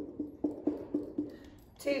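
Felt-tip dry-erase marker tapping on a whiteboard in quick strokes, about four a second, as a 1 is written into each circle in a row; the taps stop about a second and a half in.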